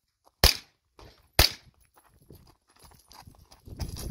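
Two shots from a pistol-caliber carbine, about a second apart, each sharp with a short ringing tail. A steady outdoor background noise rises near the end.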